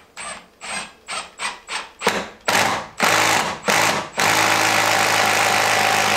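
Cordless drill boring up through the wooden top plate of a door frame to make a hole for wiring into the attic. The trigger is pulsed in short bursts, about three a second, then held for longer runs, and over the last two seconds the drill spins steadily.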